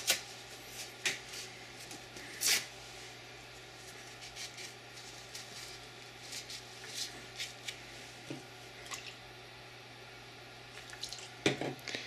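Quiet handling sounds of pistol-barrel cleaning: carbon remover being put on the cleaning patch, and paper towel and cleaning rod rubbing and lightly clicking, with a short noisy burst about two and a half seconds in. A steady low hum runs underneath.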